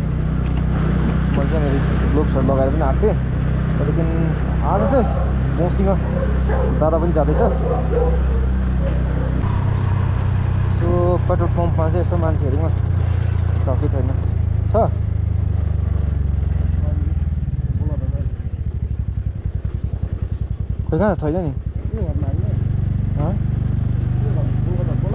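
Motor scooter engine running steadily while riding, with a person's voice talking over it at intervals. The engine note shifts about nine seconds in and drops away for a few seconds near the end, as when easing off, before picking up again.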